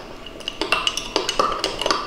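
Metal spoon stirring in a glass mug, clinking against the glass several times in an uneven rhythm. It is dissolving a brown-sugar and butter batter in a splash of hot water.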